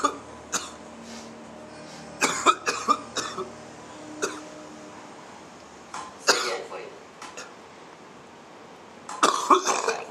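A man coughing in short fits while a nasogastric tube is passed through his nose and down his throat, the tube irritating his throat; one cluster of coughs comes about two to three seconds in and another near the end.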